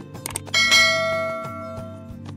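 Subscribe-button sound effect: a couple of quick mouse clicks, then a bright bell chime struck once about half a second in that rings and fades over about a second.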